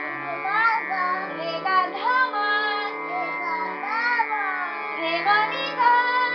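A young child singing a melody over a harmonium, whose reeds hold steady sustained chords while the low notes change underneath.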